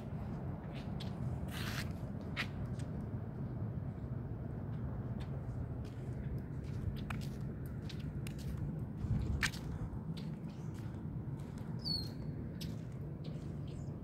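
Footsteps and small clicks of a handheld phone while walking on pavement, over a steady low rumble. A brief high squeak sounds near the end.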